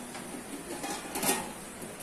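Kitchenware being handled at a stainless-steel sink: a faint steady noise with one brief clatter a little over a second in.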